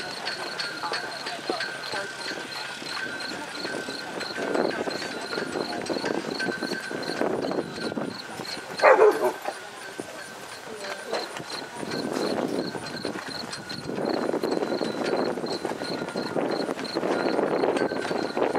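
A horse cantering around a show-jumping course, its hoofbeats muffled on sand footing, with spectators chattering in the background. About nine seconds in, a short, loud cry falls steeply in pitch; it is the loudest sound.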